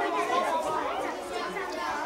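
A crowd of children chattering at once, many voices overlapping.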